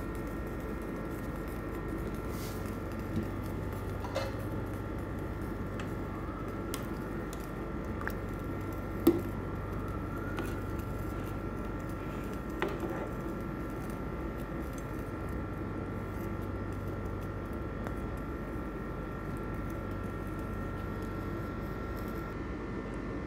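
Steady background hum with a faint high tone, broken by a few light clicks and knocks of a utensil against a wok of chicken in water, the sharpest about nine seconds in.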